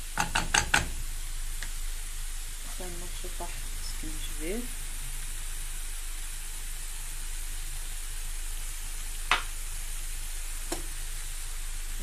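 Chopped greens sizzling steadily in a pot, with a quick run of about five sharp knocks of a wooden spoon against the pot in the first second and a single sharp knock about nine seconds in.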